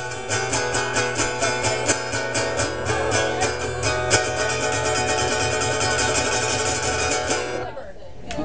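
Guitar strummed in a steady rhythm as the instrumental close of a song, with no singing. The strumming stops about half a second before the end.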